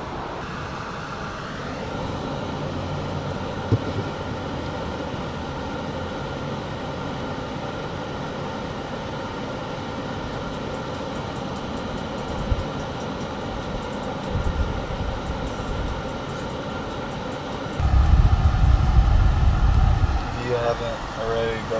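Steady hum inside a car's cabin as it sits with the engine running. Heavy low rumbles come about two-thirds of the way through and again near the end, as the camera is handled.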